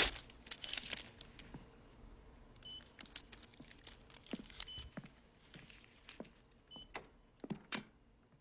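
Short high electronic beep from a bedside heart monitor, sounding about every two seconds, with soft clicks and rustles of handling in a quiet room. A sharp click at the start and another near the end.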